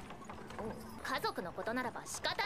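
Quiet anime soundtrack: horse hooves clip-clopping, with Japanese character dialogue coming in about a second in.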